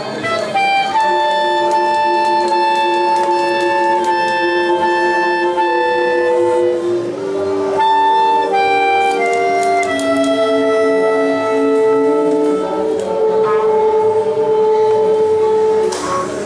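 Oaxacan brass-and-woodwind band with clarinets, trumpets and trombones playing a slow passage: long held chords in several parts, the notes changing every second or two.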